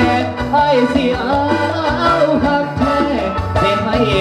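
A Lao pop song performed live: a man singing into a microphone over steady amplified instrumental backing.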